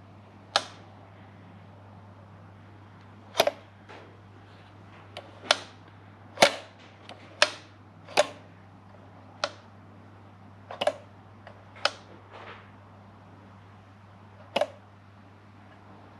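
Throttle linkage of a Toyota 1UZ-FE V8 throttle body worked by hand, the return spring snapping the throttle plate shut with a sharp click each time it is let go: about a dozen clicks at irregular intervals, some doubled, over a low steady hum.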